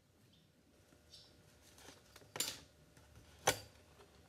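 Metal scriber scratching layout lines onto copper plate: a few light, short strokes, then two louder, sharp scrapes in the second half.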